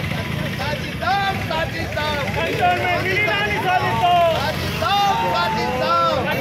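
A group of men shouting slogans together, several voices overlapping, over a steady low rumble of street noise.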